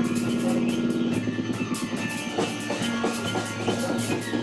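Band music with a steady beat, pitched notes playing over regular drum hits.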